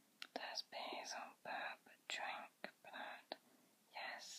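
A person whispering a few words in short phrases, with a few short clicks between them.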